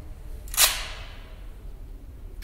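A single sharp click about half a second in, with a short ringing tail, over a low steady hum.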